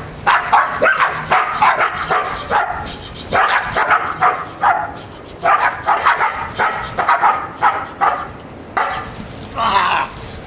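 Dogs barking in rapid, repeated bursts at a decoy in a padded bite suit during protection work.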